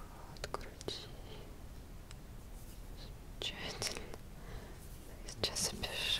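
A woman whispering close to the microphone, in two short stretches about three and a half and five and a half seconds in, with a few soft clicks near the start.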